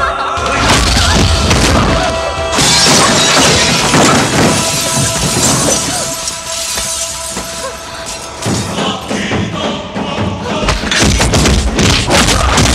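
Film fight-scene soundtrack: a dramatic background score with glass shattering a few seconds in, as a car windshield is smashed, then heavy thuds of blows near the end.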